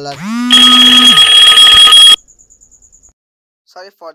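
A loud electronic alarm-like sound that rises in pitch for about half a second, then holds a harsh, steady, many-toned blare before cutting off abruptly about two seconds in.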